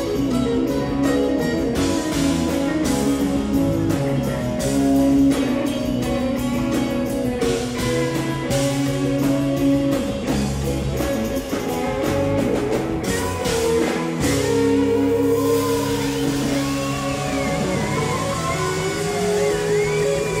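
Live rock band playing, with electric guitars, bass and a drum kit keeping a steady beat. About two-thirds of the way in the drums drop away, leaving held chords under a lead line that bends up and down in pitch.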